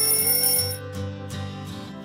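Background acoustic guitar music, with a bright high chime lasting under a second at the start that signals the end of a timed exercise countdown.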